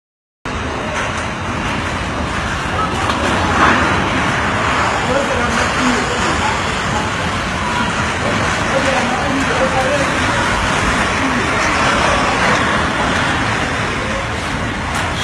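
Tornado-force wind blowing hard, a dense, steady roar heard from behind a building's glass walls, starting about half a second in.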